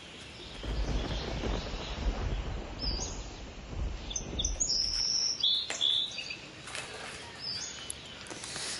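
Small songbirds chirping: several short, high whistled notes in the second half, over a low rumble in the first half.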